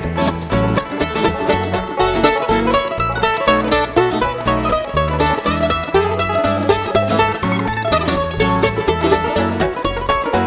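Bluegrass string band playing an instrumental break: fast-picked mandolin and banjo notes over guitar and an upright bass keeping a steady beat.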